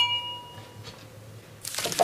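A bright, bell-like chime sound effect struck once and ringing for under a second, followed about a second and a half in by a whoosh sound effect as a title transition.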